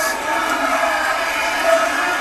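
Game-show studio audience shouting all at once: many overlapping voices merged into a steady crowd noise.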